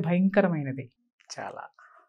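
A woman talking, breaking off about a second in, followed by a brief soft voice sound.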